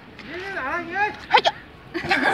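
Wordless voice sounds from the card players, short and wavering, with two quick sharp clicks about one and a half seconds in as a playing card is laid down on the picnic cloth.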